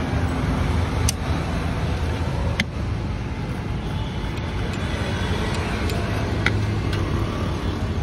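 Steady low rumble of street traffic, with a few sharp clicks of a steel knife against a plastic cutting board as a toasted sandwich is cut.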